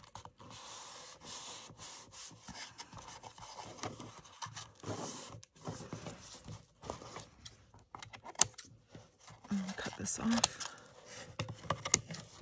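Paper rubbing and rustling as a glued strip of old book page is pressed and folded over the edge of a card cover, with a single sharp click partway through. Near the end, scissors snip off the excess paper.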